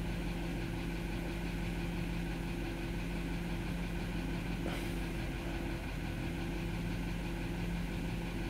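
Toyota 4.7 L 2UZ-FE V8 idling steadily, running on a newly replaced cylinder-2 ignition coil after a misfire. A faint click about halfway through.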